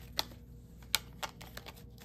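A few light, sharp clicks at irregular intervals, about five in two seconds, the first two the loudest, over a faint steady low hum.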